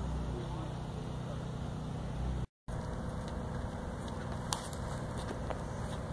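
Steady outdoor background noise with a low, engine-like hum. The sound drops out briefly about two and a half seconds in, and afterwards the steady noise carries a couple of faint, distant knocks.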